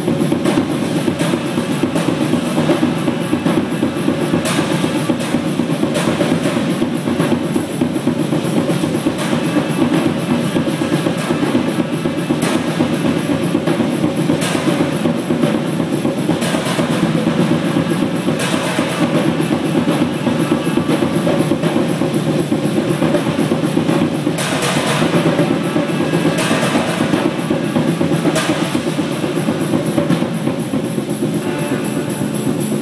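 Two drum kits played together in a dense, unbroken stream of drumming, with loud cymbal crashes recurring every couple of seconds in stretches.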